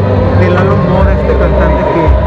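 People talking over one another, unclear voices close to the microphone, over a loud steady low rumble.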